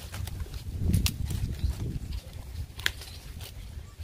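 Fresh coconut palm leaflets rustling and crackling as they are pulled and tucked through a hand-woven panel, with sharp crackles about a second in and again near the three-second mark, over a low rumble.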